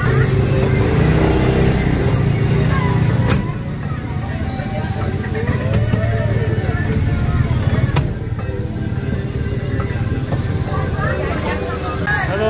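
Engine of an odong-odong, a small open passenger trolley, running steadily at low speed, loudest in the first few seconds as a motor scooter passes close by. Voices and music sound over it.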